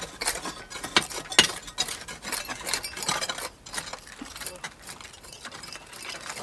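Hand tools (trowels and small picks) scraping and tapping in dry, stony soil during excavation: irregular clicks and scrapes, with a couple of sharper knocks about a second in.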